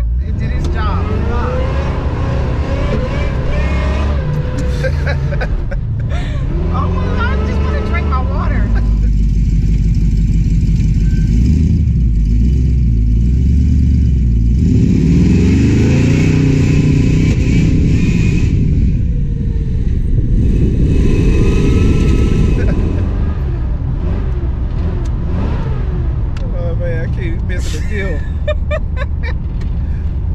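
Supercharged Oldsmobile Cutlass accelerating hard, its engine note climbing in repeated rising sweeps about halfway through, then settling back to a steadier run near the end.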